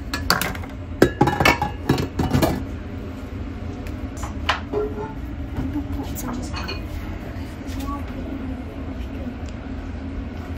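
A metal spoon clinking and scraping against a metal mixing bowl and a foil pie tin as creamy filling is spooned out, with a quick cluster of sharp clinks in the first two and a half seconds, then fewer, quieter clicks over a steady low hum.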